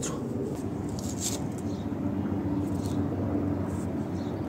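Faint rustling of dry leaves and potting soil as a plant's last root is pulled free of its pot by hand, over a steady low background hum.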